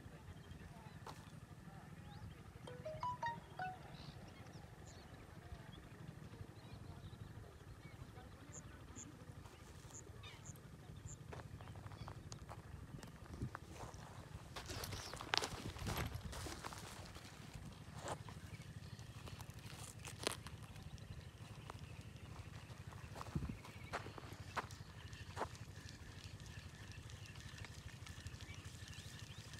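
Faint outdoor ambience: a steady low rumble of wind on the microphone, a few short bird chirps, and scattered clicks and taps, with a louder rush about halfway through.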